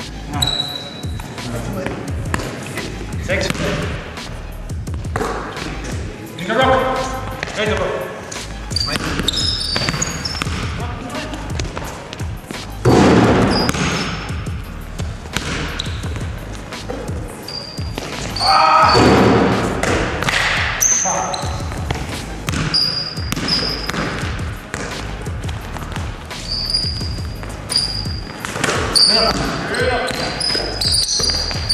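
Pickup basketball game in a large hall: the ball bouncing on the floor repeatedly, sneakers squeaking, and players' voices, with two loud outbursts of voices partway through.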